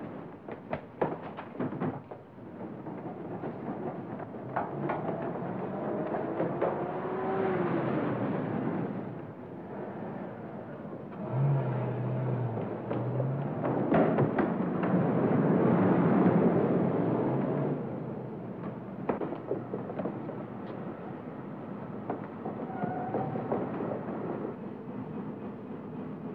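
Old film soundtrack with a dramatic score that swells twice, loudest a little past the middle. A few sharp knocks and clicks come in the first couple of seconds.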